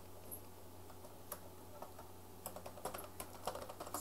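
Computer keyboard keystrokes, faint: a few scattered taps at first, then a quicker run of them in the last second and a half, over a steady low hum.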